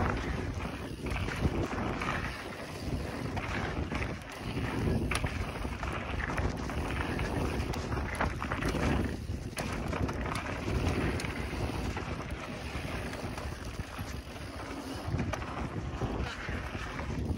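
Wind rushing over the microphone of a mountain bike riding fast down a dirt trail, with a steady rumble and scattered sharp clicks and rattles.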